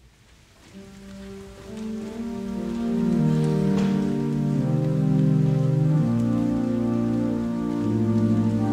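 Pipe organ starting to play: held chords come in about a second in and swell over the next two seconds, then sustain, moving from chord to chord.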